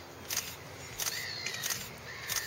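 Outdoor background with faint bird calls and three short clicks spread across the two seconds.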